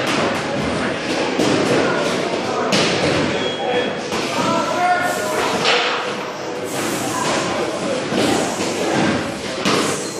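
Busy gym background: indistinct voices with several sharp thuds from weights.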